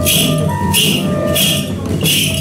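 Hana Matsuri dance music: a bamboo flute playing held notes over rhythmic jingling of shaken suzu bells, the jingles coming about twice a second.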